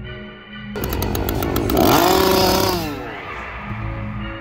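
A small engine rattling briskly, then revving up and falling back down, over background music.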